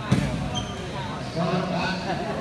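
A futsal ball kicked once, a single sharp thud just after the start, followed by players and onlookers calling out.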